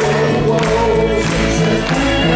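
Live band playing a slow rock song, with a sustained sung vocal line over held chords and a percussion hit roughly every two-thirds of a second.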